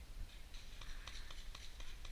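Faint, irregular clicks and light rustling over a low rumble on the microphone.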